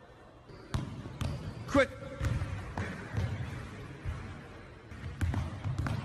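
A basketball being dribbled on a hard indoor court, with irregular bounces about one to two a second. A short high squeak a little under two seconds in is the loudest sound.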